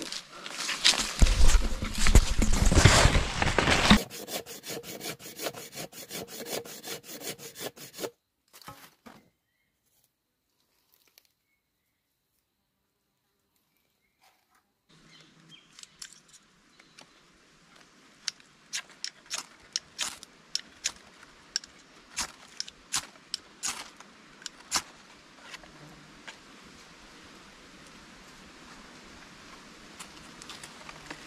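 Loud rustling and crunching of dry leaves and undergrowth as someone moves through the forest with the camera. After a few seconds of silence comes a run of sharp, irregular scraping strikes from a hand-held fire starter throwing sparks into dry tinder on a sheet of bark, until it catches.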